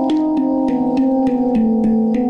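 Handpan (steel hang drum) played with the fingers: a quick run of ringing, pitched notes, roughly three a second, each note sustaining into the next.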